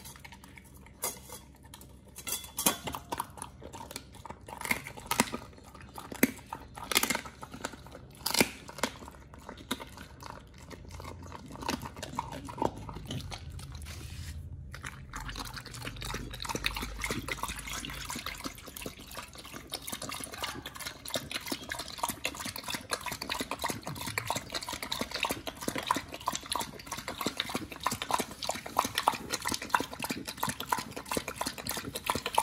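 Pit bull eating raw duck feet from a stainless steel bowl: chewing with sharp clicks and knocks against the bowl. About halfway through it turns to lapping water from the bowl, a steady run of quick laps to the end.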